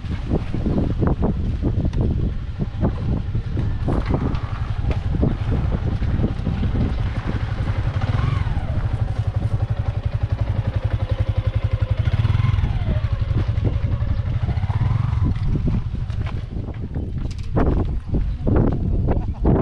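Small motorcycle engine running close by with a steady low pulse, its pitch dipping and rising a few times in the middle.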